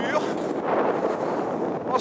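Steady rushing noise of skiing downhill on the move: wind on the microphone mixed with skis sliding on packed snow.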